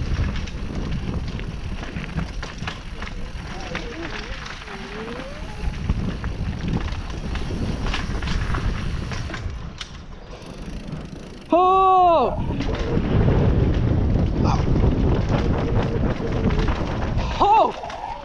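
Mountain bike descending a rocky downhill trail: tyres crunching over gravel and rock, the bike rattling, and wind on the helmet-mounted microphone. The noise eases briefly as the bike rolls over a wooden bridge about ten seconds in, then grows louder on rougher ground. A short rising-and-falling "oh" from the rider comes about twelve seconds in, and others come near the end.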